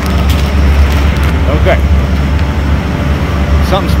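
Walk-in freezer evaporator fans running: a loud, steady low rumble of moving air.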